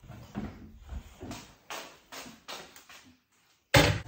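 Movement and handling noise as a steel pot is carried: a string of soft knocks and rustles, then a short gap and a loud knock near the end.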